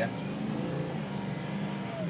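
Ford F350's 6.0-litre Power Stroke turbo-diesel V8 pulling hard under full throttle, heard from inside the cab, with a steady, even engine note as the turbo builds boost.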